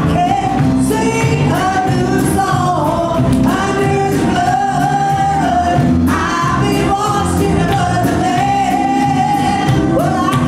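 A group of singers singing a gospel song together with a live band, the voices held on long notes over a steady bass and drum beat.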